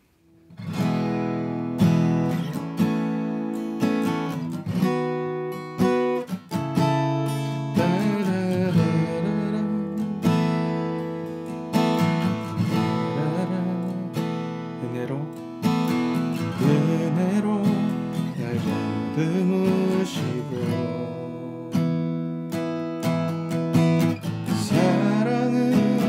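Eastman E6D acoustic guitar strummed in steady chords as song accompaniment, with a man's singing voice coming in over it about a third of the way in.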